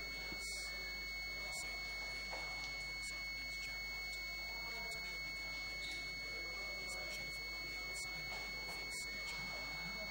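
Electrical noise on the commentary audio line: a faint, steady high-pitched whine of two constant tones over hiss and a low mains hum, with a few faint ticks.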